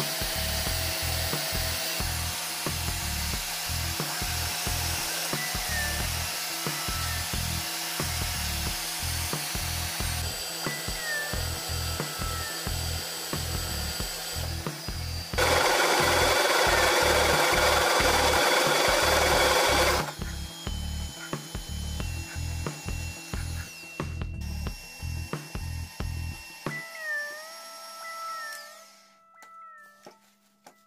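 Background music with a steady beat, fading out near the end. For about four seconds in the middle a loud, rasping cut from a step drill bit in a Bosch benchtop drill press boring steel starts and stops abruptly over the music.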